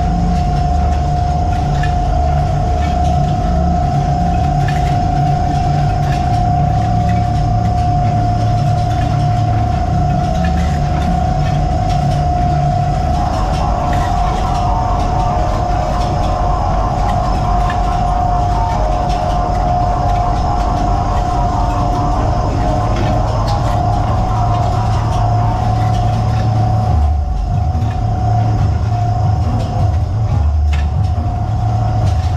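Loud, steady machinery noise aboard a longline fishing vessel: a low engine rumble under a constant high whine. A rougher rattling layer joins partway through and drops out again near the end.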